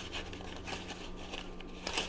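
Wooden colored pencils rubbing and clicking against each other as they are sorted and picked out of a cardboard pencil box, faint.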